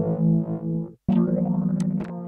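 A music loop playing through Lunatic Audio's Narcotic multi-effect plugin, heard with the effect applied. The sound drops out briefly about a second in and then starts again.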